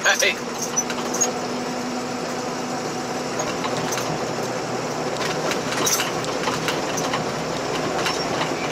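Steady road and engine noise of a car driving, heard from inside the cabin, with a low steady hum that fades out about three seconds in.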